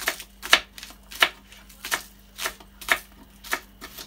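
Kitchen knife slicing spring onion on a plastic cutting board: about eight sharp knife-on-board knocks at uneven spacing, roughly two a second.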